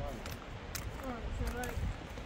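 Footsteps and the sharp clicks of trekking-pole tips on bare rock, over wind rumbling on the microphone, with a faint voice talking in the background.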